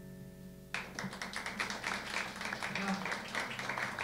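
The last chord of a piece on a Yamaha digital piano dies away. Under a second in, audience applause breaks out suddenly: many hands clapping, holding steady.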